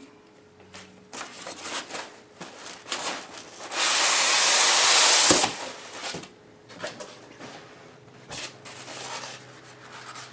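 A cardboard box being unpacked: light rustling and handling clicks, then, a little before halfway through, a loud scraping rush lasting nearly two seconds as a styrofoam packing block slides out of the cardboard box.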